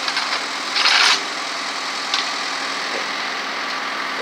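Work vehicle engines idling steadily, a low even hum. About a second in comes one short, loud noisy burst, a hiss or scrape.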